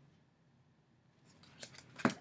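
Near silence, then a few faint clicks and rustles of tarot cards being handled near the end.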